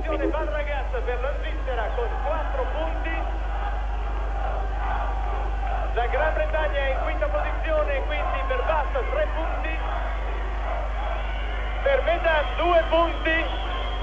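Speech: a man talking into a microphone, with other voices overlapping at times, over a steady low hum.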